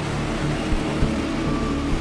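Steady road traffic noise from a busy multi-lane street with passing motorbikes and cars, under a quiet background music bed.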